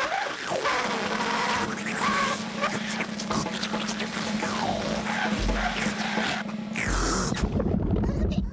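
Noo-Noo, a toy vacuum cleaner prop, running with a steady hum and rushing air as it blows the ball up and spins it on its hose. Comic swooping sound effects and music play over it.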